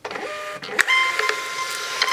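MUNBYN thermal label printer feeding and printing a shipping label: a steady motor whine with a hiss. About a second in there is a click, and the whine steps up to a higher pitch.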